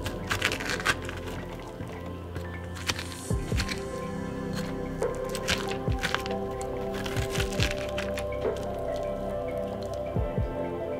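A metal spoon scraping seeds and stringy pulp out of a halved butternut squash, a series of short wet scrapes and squishes over background music.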